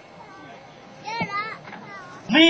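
A quiet gap in the music with a faint background, broken about a second in by a short, high-pitched call from a person's voice.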